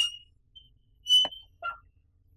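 Electric doorbell pressed at a gate, giving short high-pitched beeps: one at the start, a louder one about a second in, and a short two-note beep just after.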